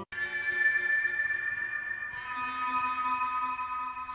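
Sampled ambient guitar effects sound from a cinematic guitar library: long sustained, drawn-out guitar tones held like a drone. It starts straight after a brief cut, and the pitches change to a new chord about halfway through.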